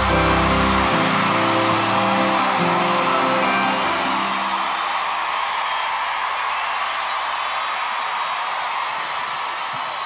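A live band's final held chord ringing out. The bass cuts off about a second in and the guitars and other instruments die away over the next few seconds. A large crowd cheers and applauds throughout and carries on after the music has faded.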